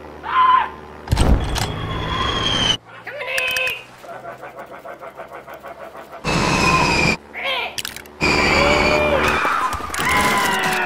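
Cartoon sound effects of a seagull diving: a short squawk, then loud rushing whooshes of air with a falling whistle. These are broken by a stretch of quick rattling chatter at about five beats a second.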